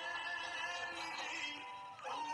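A Hindi film dance song playing: a sung vocal line over instrumental backing.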